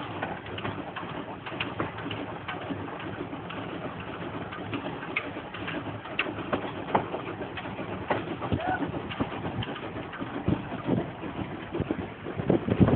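Small 1907 Cockerill steam locomotive running slowly past: a steady hiss with irregular clanks and knocks.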